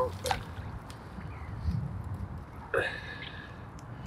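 A carp rig and lead tipped from a baiting spoon on a pole into lake water: a short splash and gurgle just after the start, then water moving around the pole over a steady low rumble.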